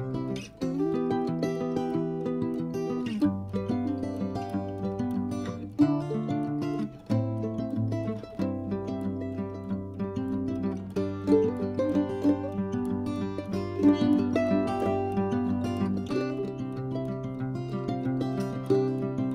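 Instrumental background music: plucked-string notes over held bass notes that change every couple of seconds.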